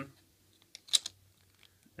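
Hard plastic chest armour clicking into place on an action figure: a few light taps and one sharper click about a second in.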